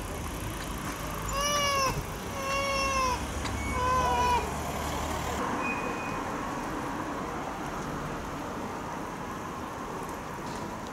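A cat meowing three times in quick succession, each meow drawn out and falling in pitch at the end. A vehicle's low engine rumble underneath stops about halfway through.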